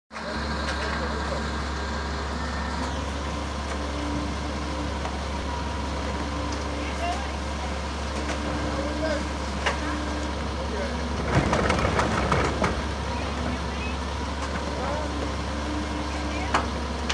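Rear-loader garbage truck running steadily at idle, with a louder burst of clattering about two-thirds of the way through as the crew works at the rear hopper.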